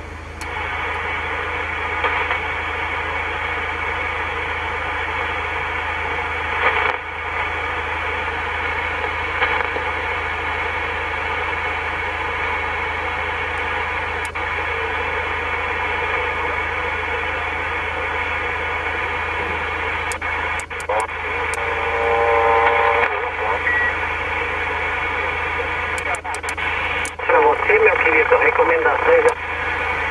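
CB transceiver receiving on upper sideband in the 27 MHz band: steady hiss of band static while the set is tuned between channels, with faint, garbled sideband voices of distant stations coming through about two-thirds through and again near the end.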